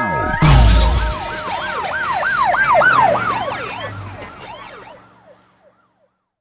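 Outro sound effect at the end of a song: a falling pitch sweep and a deep boom, then a siren-like wail that rises and falls about four times a second and fades out over a few seconds.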